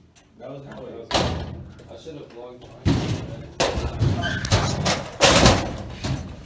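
Someone banging on a door with hands or fists: a few sudden, separate bangs, the loudest near the end.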